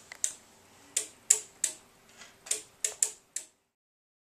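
A series of about nine short, sharp clicks at uneven intervals, stopping about three and a half seconds in.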